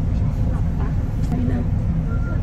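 Steady low rumble of a bus heard from inside its cabin, with faint snatches of voices over it.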